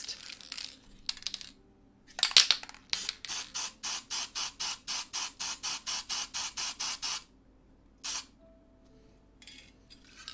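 Aerosol fixative can (Helmar Crystal Kote workable matte) spraying in a run of short, rapid bursts, about four a second for some four seconds, with one last burst a second later; a few sharp clicks come just before the spraying starts.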